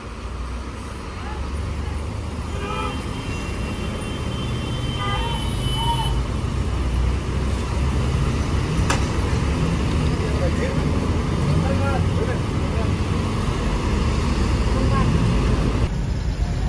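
Road traffic with a heavy diesel coach engine rumbling low as the coach pulls away, the rumble building steadily louder.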